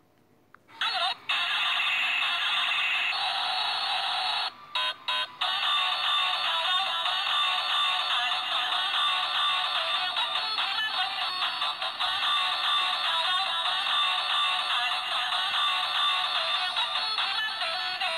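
A knock-off toy's electronic song, recorded and played back through a phone's speaker. It sounds thin and tinny with no bass, and cuts out briefly a few times about five seconds in.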